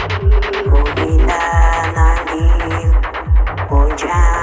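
Psytrance track: a deep kick drum about every 0.4 seconds, with a rolling bassline between the kicks. About a second in, a synth line with bending pitch joins, over a high hiss.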